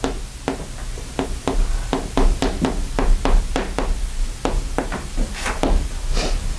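Chalk writing on a chalkboard: a quick run of sharp taps, irregular at about three a second, as each stroke of the letters is made.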